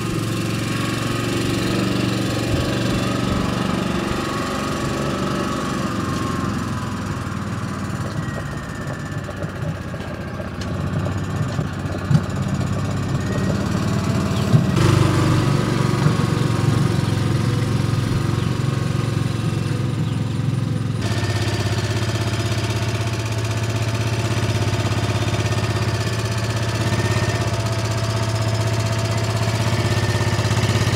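Small engine running steadily at a low idle. The sound changes abruptly twice, about halfway through and again a few seconds later, where separate takes are cut together.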